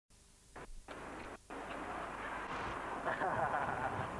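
Start of an old camcorder videotape recording: the sound cuts in and out twice in the first second and a half, then settles into steady outdoor background noise, with indistinct voices from about three seconds in.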